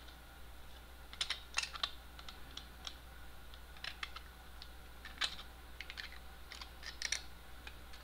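Irregular small clicks and taps of a 3D-printed plastic case and circuit board being handled, coming in short clusters about a second in, around four and five seconds in, and near seven seconds, over a faint steady hum.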